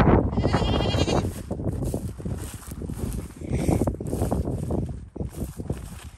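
Goats bleating: a loud, wavering bleat in the first second, a fainter call a few seconds later, then scattered rustling and light steps in dry grass as the sound fades.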